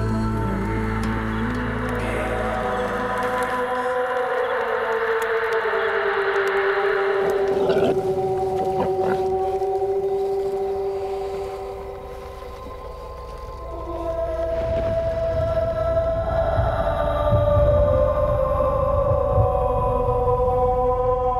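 Ambient trailer score: several long held tones that slowly glide in pitch. It thins and quietens about two-thirds of the way through, then swells back up towards the end.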